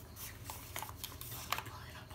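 Thick journal pages being handled and picked apart at the edge, with a few light clicks and soft rustles of paper.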